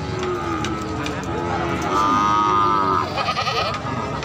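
A goat bleating once, a single call of about a second starting about two seconds in, the loudest sound, with people talking in the background.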